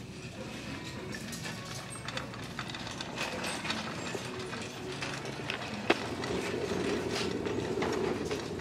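A loaded shopping cart being pushed along: its plastic basket, metal frame and the ceramic pieces inside rattle with many small clicks, with one sharp click a little before six seconds in and the rolling noise a little louder over the last two seconds.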